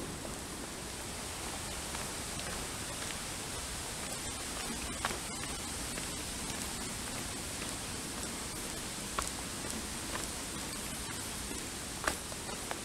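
Steady, even outdoor hiss along a wooded trail, with a few short faint clicks about five and nine seconds in.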